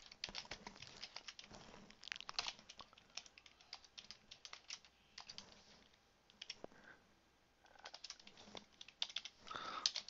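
Computer keyboard typing: faint, quick, irregular keystrokes, with a short lull a little past the middle before the typing picks up again.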